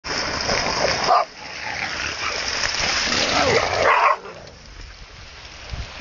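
A dog barking a few times over a loud, steady rushing noise that cuts off abruptly about a second in, returns, and drops away about four seconds in.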